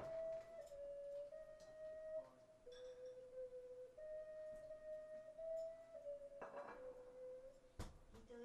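A small hand-held wind instrument, cupped at the mouth, plays a slow melody of held, nearly pure notes that step up and down within a narrow range. A short breathy rush comes about six and a half seconds in, and a sharp knock just before the end.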